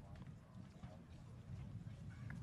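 Faint outdoor ambience: a steady low rumble with distant, indistinct voices.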